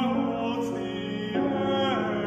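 A baritone singing a classical art song with grand piano accompaniment: long held notes with vibrato, moving to a new note about a second and a half in.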